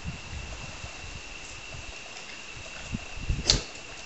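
Camera handling noise: a short sharp thump and rustle about three and a half seconds in, with a smaller one just before it, over a steady faint high-pitched whine.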